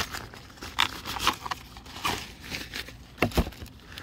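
Handling noise: a drawstring pouch and small gear being rustled, with scattered light clicks and a couple of sharper knocks about three seconds in.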